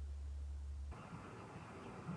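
Faint background with a low steady hum that cuts off suddenly about a second in, leaving only faint hiss.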